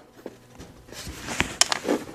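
Small steel parts of a rusted Winchester 1873 lower tang and set trigger clicking against each other as a spring is worked off by hand. There are a few sharp, light clicks in the second half.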